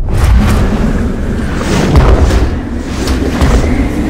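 Horror-trailer sound design: a loud, dense rumbling roar that starts abruptly, with several sharp hits through it.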